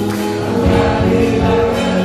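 Live worship band and singers performing an upbeat Indonesian praise song, voices singing together over the band's keyboards and beat.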